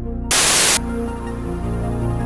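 Slow synthesizer music with held notes, cut by a loud half-second burst of TV static a third of a second in, after which the music carries on.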